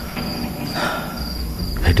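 Crickets chirping in an evenly pulsed high trill, a few chirps a second, over a low rumble.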